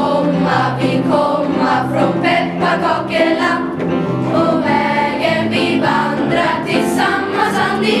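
A choir of schoolchildren singing a Swedish Lucia song together, voices running on without a break.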